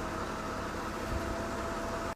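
Steady low hum with a hiss over it, and a faint thin steady tone that comes in shortly after the start.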